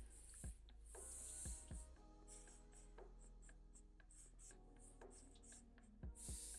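Faint scratching of a felt-tip marker drawing short strokes on paper, with soft taps as the tip meets the page.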